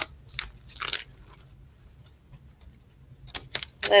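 A cardboard record mailer being opened by hand: two short crunchy scrapes of cardboard and packing in the first second, then quieter handling and a few sharp clicks near the end.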